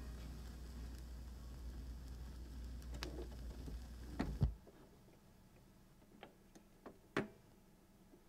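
Turntable stylus riding a vinyl LP's groove after the music has ended, with a low rumble and faint surface crackle. A sharp click comes about four and a half seconds in as the tonearm is lifted off the record, and the rumble stops at once. A few scattered light ticks follow.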